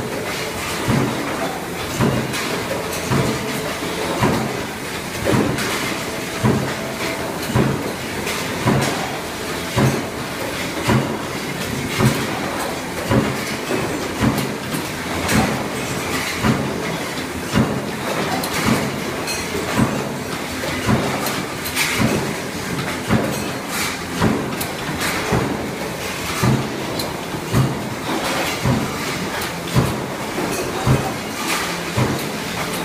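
Sheet-metal forming machinery running: a steady mechanical clatter from roll-forming lines, with a regular heavy thump a little faster than once a second, like the strokes of a power press or cut-off.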